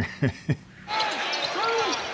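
Live basketball game sound in an arena: crowd noise with sneakers squeaking and the ball bouncing on the hardwood court, starting about a second in.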